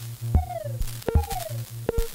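Ciat-Lonbarde Plumbutter drum-and-drama synthesizer playing: a steady low drone under three percussive hits, each trailed by a short tone falling in pitch. The AV Dog module's movement is patched in as modulation, giving a swaying motion likened to a dog wagging its tail.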